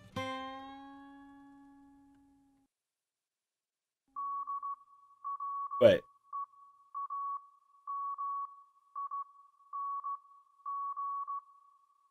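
A last guitar chord rings out and fades away over about two seconds. After a short silence, a steady high beep tone keys on and off in short and long beeps: Morse code, spelling out "dreaming". One brief louder sound cuts in about six seconds in.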